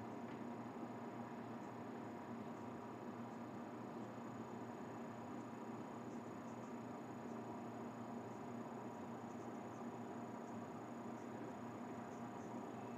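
Faint steady hiss and low hum of a quiet small room's background noise, with no distinct event.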